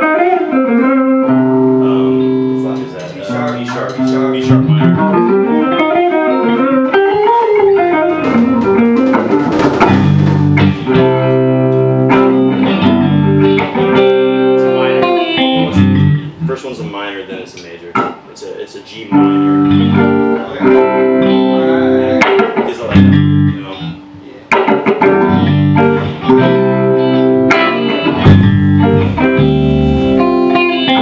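An electric guitar and a drum kit playing an improvised rock jam: the guitar plays lead lines with quick runs sweeping up and down in pitch early on, over steady drumming. The playing thins out briefly twice, around the middle and again a little later.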